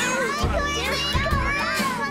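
Several cartoon children's voices shrieking and whooping together over background music with a pulsing bass beat.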